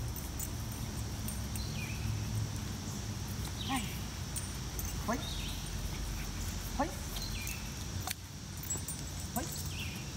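A five-month-old German Shepherd puppy on a leash whining and yelping in short cries, a few times. Behind it is a steady, high insect drone.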